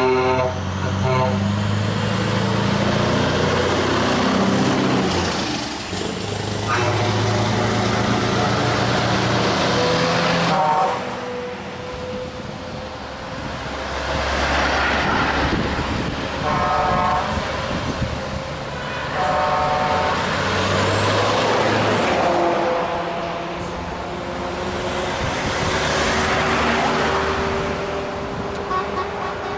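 Tow trucks and other vehicles in a convoy driving past one after another, the engine and road noise rising and falling as each goes by. Vehicle horns sound several times as they pass.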